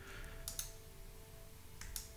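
Faint computer mouse clicks, a few scattered short ones, made while dust spots are clicked away one by one with the spot-removal tool, over a faint steady hum.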